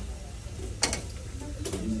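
Two sharp clicks of hard parts being handled, the first a little under a second in and the second about a second later, over a low steady room hum.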